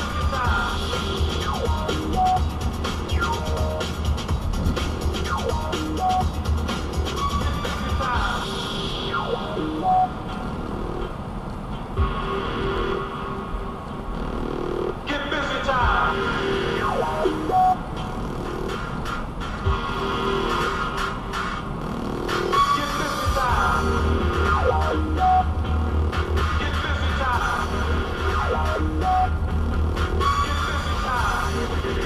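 Electronic music with a steady beat playing on a car radio, heard inside the car. The deep bass drops away for a while in the middle and comes back about three-quarters of the way through.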